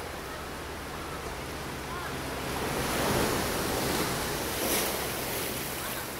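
Ocean surf washing up a sandy beach: a wave rushes in about halfway through, builds to its loudest, then eases off.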